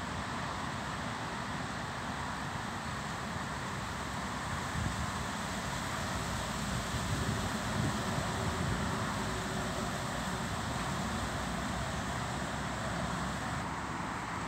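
Steady outdoor background noise of distant city traffic and wind, with wind buffeting the microphone in low gusts, strongest from about five to nine seconds in.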